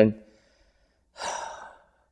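A man's single breathy sigh, lasting under a second, in a pause just after he trails off mid-sentence.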